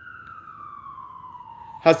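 Emergency vehicle siren wailing: one slow tone falling steadily in pitch.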